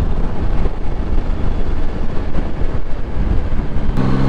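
Motorcycle on the move, heard from on board: a loud, steady rush of wind and road noise over the engine. Near the end a steady, even-pitched engine drone comes through.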